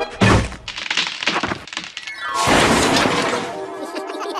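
Cartoon slapstick sound effects: a heavy thump just after the start, a run of cracking and snapping, then a longer loud crash about halfway through that fades out.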